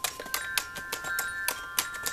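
A dog pawing at a small plastic toy keyboard, sounding several high, chime-like notes that hold and overlap, with quick clicking taps of the paw on the keys throughout.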